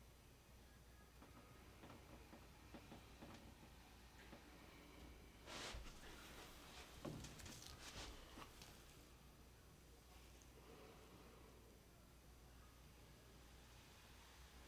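Near silence with a steady low hum, broken by a faint rustle and a few soft clicks about six to eight seconds in: a paint-loaded paper towel being peeled off a wet acrylic-pour canvas.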